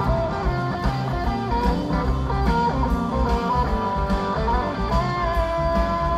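Live rock band playing an instrumental passage, heard from the audience: electric guitars over bass and a steady drum beat, with a long held lead note starting about five seconds in.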